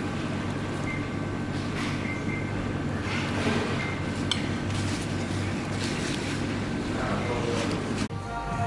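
Knife and fork scraping and clinking on a plate a few times, with one sharp clink about four seconds in, over a steady low hum of background noise and faint voices.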